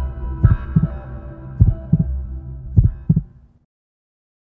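TV channel ident music: deep low thumps in pairs over a held synth chord, fading out about three and a half seconds in.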